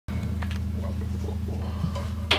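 Steady low electrical hum from an idling electric-guitar amplifier, with a few faint knocks and handling noises.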